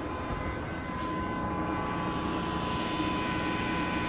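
Older MBTA Red Line subway car running, heard from inside the car: a steady rumble of the train on the track with a thin, steady high whine over it.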